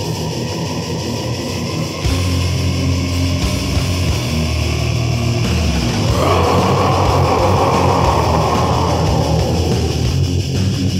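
Old-school death metal with heavily distorted electric guitars, bass and drums. The music gets louder about two seconds in, and a brighter, denser layer comes in about six seconds in and holds for about three seconds.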